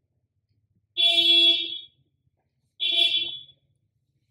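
A horn-like signal sounding twice: a loud, buzzy beep lasting about a second, then a shorter one about two seconds after the first.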